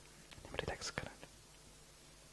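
Faint whispered speech: a few soft murmured words about half a second to a second in.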